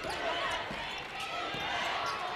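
A basketball being dribbled on a hardwood court, over a steady murmur of arena crowd noise and faint voices.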